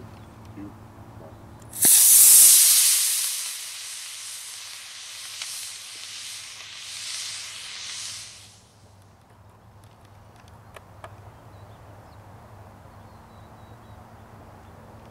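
Model solid rocket motor lighting with a sudden loud hiss about two seconds in and burning for about six seconds, growing fainter and wavering as the rocket-boosted RC plane climbs away, then burning out.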